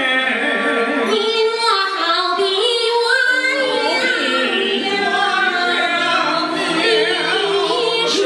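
A woman and a man singing a Chinese opera (xiqu) duet into microphones, with musical accompaniment.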